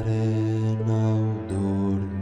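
Bowed cello playing slow, sustained low notes in an instrumental passage of a lullaby, moving to a new note about one and a half seconds in.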